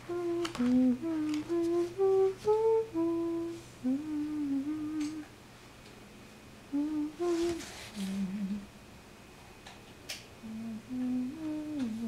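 A person humming a tune in short, held notes that step up and down in phrases, pausing for a second or so between phrases. A faint steady low hum runs underneath.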